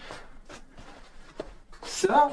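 Faint rustling and shuffling of a person moving about and handling things, with a light click about a second and a half in.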